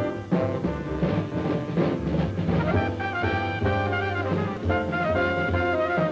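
Hard-bop jazz band playing: a drum kit driving with cymbals and drum hits under sustained horn lines from tenor saxophone and trumpet.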